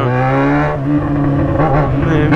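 Yamaha XJ6 motorcycle's inline-four engine running under way, its note rising slightly over the first second and then holding steady.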